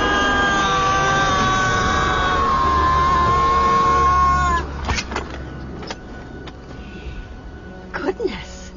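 A loud, high whine with several overtones, sliding slowly down in pitch for about four and a half seconds before cutting off abruptly. A few light knocks follow in a quieter stretch.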